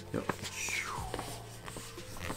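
A paper scroll being unrolled from its tube: crinkling paper with light handling clicks. A brief falling whistle-like tone comes about half a second in.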